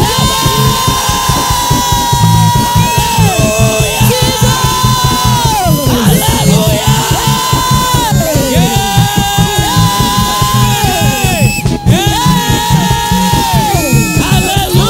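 Upbeat worship music with a lead voice holding long notes that slide down in pitch, over a fast, driving bass beat, with the congregation's voices joining in.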